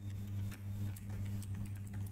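Computer keyboard keystrokes, a few light clicks as code is typed, over a steady low electrical hum.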